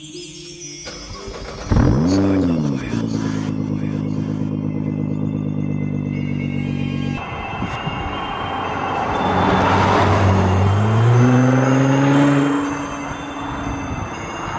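Nissan GT-R twin-turbo V6 started by push button: it catches about two seconds in with a quick rev flare, then settles to a steady idle. From about eight seconds the car drives past, its engine note rising and loudest between ten and twelve seconds, with music underneath.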